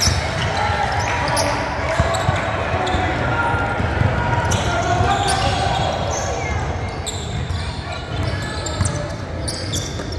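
Basketball game on a hardwood gym floor: a basketball bouncing in repeated thuds, over indistinct voices of players and spectators in the large, echoing gym.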